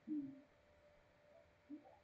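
A person's brief low hum, a short 'mm', at the start, then near silence with one faint short murmur near the end.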